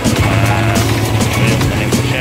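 Music playing, with a steady low note held underneath.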